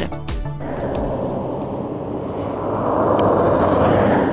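A car driving past on a snow-covered road, its tyre and engine noise swelling to a peak near the end, over background music.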